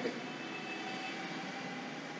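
Steady, even background noise with a faint steady hum running through it.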